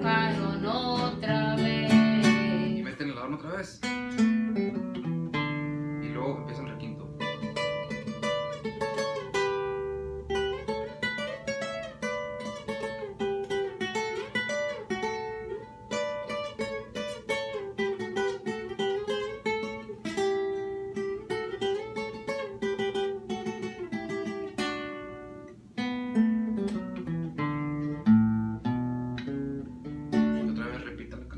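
12-string acoustic guitar (docerola) playing a sierreño-style requinto lead: strummed chords in the first few seconds, then fast single-note runs and ornaments over a held bass note, returning to strummed chords near the end.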